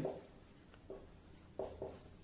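Marker pen writing on a whiteboard: a few short, faint strokes, two close together near the end.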